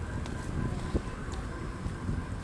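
Wind rumbling on the microphone over a low steady road rumble from riding a bicycle along an asphalt path, with one short sharp tick about a second in.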